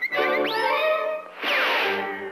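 Orchestral cartoon underscore with a quick rising slide about half a second in, then a loud, noisy crash-like hit with a falling slide near the end.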